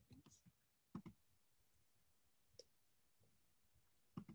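Near silence broken by a few faint, sharp computer clicks at irregular intervals, the clearest about a second in, as presentation slides are changed.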